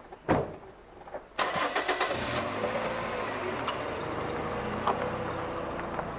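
A car door slams shut. About a second later the car's starter cranks the engine briefly and it catches, then runs steadily.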